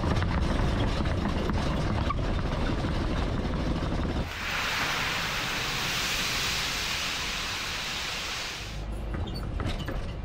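Car driving over a rough test-track surface, heard as a dense low rumble. About four seconds in it cuts abruptly to a steady hiss, and the rumble comes back near the end.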